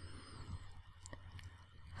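Quiet room tone: a low steady hum with a few faint small clicks, and a faint high wavering whistle in the first half-second.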